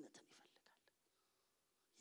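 A man's voice trailing off softly in the first moments, then near silence: room tone.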